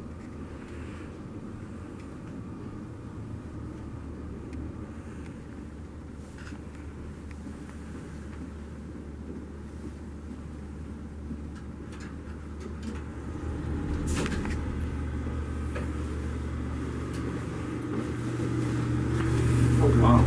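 Steady low hum and rumble of a vintage R&O hydraulic elevator as the car comes down to the lobby. About two-thirds through there is a single knock, and the hum then grows louder toward the end as the car arrives and its doors open.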